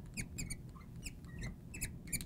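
Marker squeaking on a glass lightboard while a word is written: a quick run of short, high squeaks, many sliding down in pitch.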